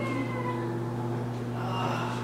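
A puppy whining: faint, thin, high whimpers that glide in pitch, trailing off just after the start and coming again near the end, over a steady low hum.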